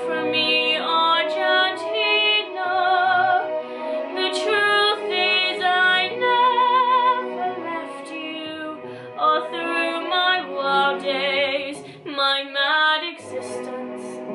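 A young woman singing a solo pop ballad, with vibrato on her held notes, over a soft instrumental accompaniment.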